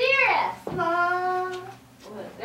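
A high woman's voice vocalizing without words: a quick swoop down in pitch, then one steady sung note held for about a second.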